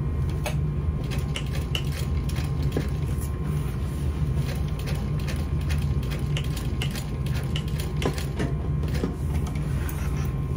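Juki industrial sewing machine with a steady low hum, with scattered light clicks and knocks as the webbing strap is stitched and handled at the needle.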